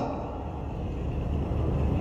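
Steady low rumble with a faint hiss: background noise picked up by the speaker's public-address microphones.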